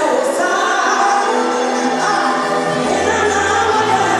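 Live gospel song: a woman singing lead into a microphone, backed by a live band, with low bass notes coming in near the end.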